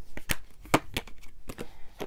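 Tarot cards being handled: a card drawn off the deck and laid on the carpet, making a series of light, sharp clicks and flicks of card stock, the loudest about three-quarters of a second in.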